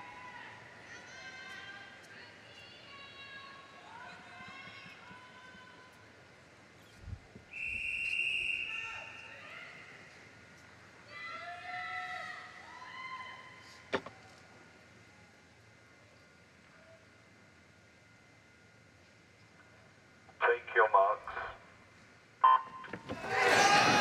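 Start of a swimming race in an indoor pool hall: faint voices from the crowd, and about a third of the way through one long referee's whistle of about a second. A hush follows. Near the end come a brief loud call and a short start tone, then loud crowd noise and splashing as the swimmers dive in.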